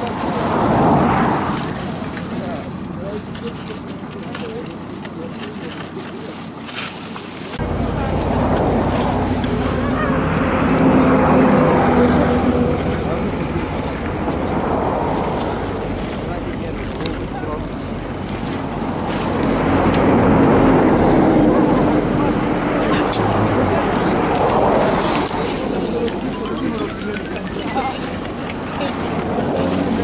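Wind buffeting the microphone with a low rumble that cuts in suddenly about a quarter of the way through, over indistinct voices.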